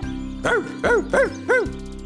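A dog barking four times in quick succession, about a third of a second apart, over light background music.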